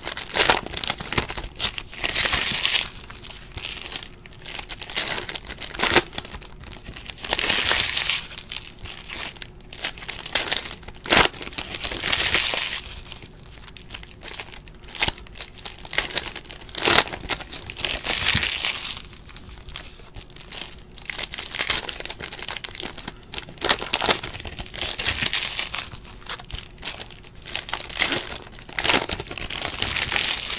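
Foil wrappers of trading-card packs crinkling as the packs are handled and opened. They come in loud bursts about every five seconds, with small clicks of cards being handled in between.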